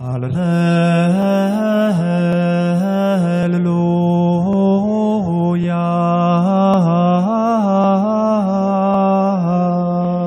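A priest chanting a liturgical melody solo into a microphone, one male voice moving in slow, smooth stepwise phrases.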